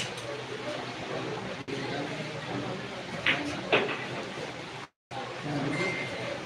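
Spectators murmuring in a pool hall, with two sharp clicks about half a second apart just past midway, a pool shot of cue tip on cue ball and then ball on ball. The sound cuts out for a moment near the end.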